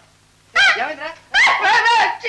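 A man's exaggerated, high-pitched whimpering cry: a short wail about half a second in, then a longer one in the second half.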